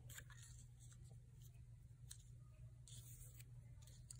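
Near silence: quiet room tone with a few faint rustles of paper as cut-out shapes are handled and slid into place.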